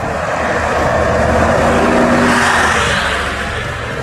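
A bus driving past close by: engine and tyre noise swelling to a peak about two to three seconds in, then easing off.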